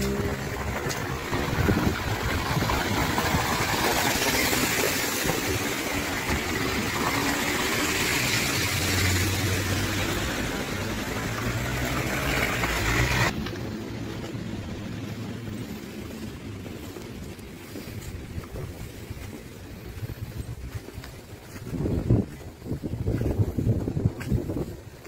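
Cars driving on a slush-covered road: tyres hissing through the wet snow, with an engine hum as a car passes. About halfway through the hiss stops suddenly, leaving quieter street sound with a few low thumps near the end.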